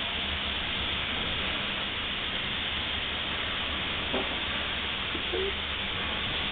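Steady hiss with a low hum under it, with two faint, brief sounds near the end.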